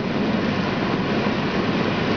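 Steady road and engine noise inside the cabin of a car being driven along an open road.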